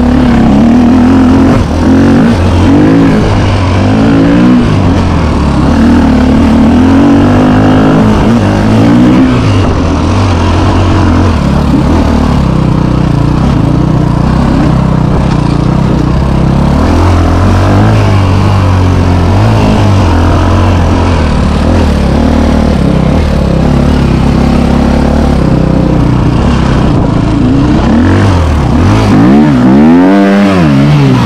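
A KTM enduro dirt bike's engine running and being revved as it rides along a rough trail, its pitch rising and falling with the throttle, with wind noise on the helmet-mounted microphone.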